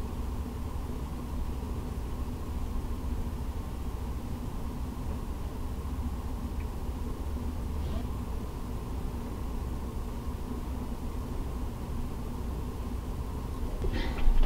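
Steady low background rumble with no speech, and a faint tick about six and a half seconds in.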